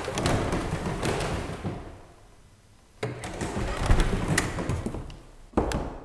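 Knocks and thuds in a room, fading to a hush about two seconds in. A sudden thud about three seconds in starts a second run of knocks, with another sharp thud near the end.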